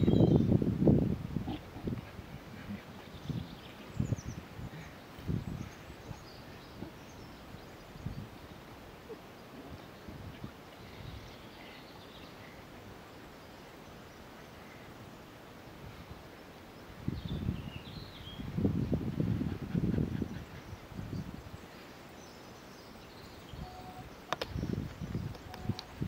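Outdoor ambience on grass: low rumbling buffeting on the microphone near the start and again for a few seconds after the middle, with scattered soft rustles and knocks in between. Faint bird chirps come through a few times.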